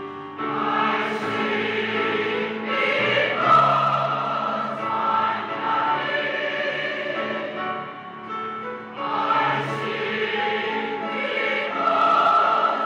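Large mixed choir of men's and women's voices singing together in full chords. The choir comes in strongly about half a second in, eases off near eight seconds and swells again a second later.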